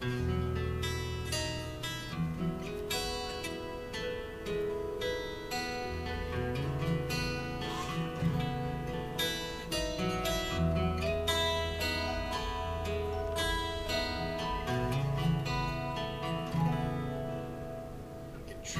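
Live band playing the instrumental introduction to a gospel song: strummed acoustic guitar over bass guitar, electric guitar and keyboard, all coming in together at once.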